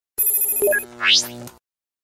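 Short synthesized intro sound effect: a bright ringing chime, a couple of quick blips, then a fast rising sweep in pitch over steady low tones, lasting about a second and a half and cutting off suddenly.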